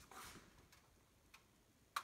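Near silence with a soft rustle near the start and a few faint clicks, the last one sharper just before the end: the plastic parts of an empty refrigerator's crisper drawers being handled.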